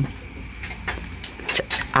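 A few light clicks and knocks from hands handling a small motorcycle battery and a plastic-wrapped electrolyte pack, over a steady low hum.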